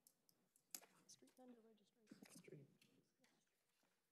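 Near silence with a faint, distant voice speaking off-microphone and a single click about three quarters of a second in.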